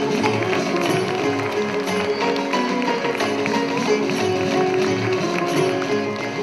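Indian classical ensemble music: plucked and bowed string instruments weave sliding melodic lines over a steady drone, with frequent percussion strokes.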